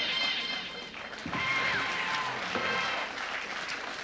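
Studio audience laughing and applauding, with a short burst of music over it that includes held tones and a brief falling glide.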